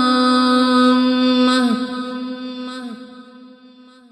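A solo voice chanting an Arabic supplication, holding one long steady note with heavy reverb. The note breaks off about a second and a half in, and its echo fades away over the next two seconds.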